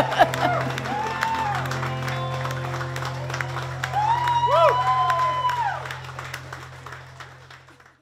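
Closing music with a long-held low note, under crowd cheering and clapping with whoops, all fading out over the last couple of seconds. A woman laughs briefly at the start.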